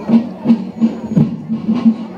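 Javanese bregada marching music: drums beating a steady march rhythm, with short pitched beats about three a second and a stronger hit about every other beat.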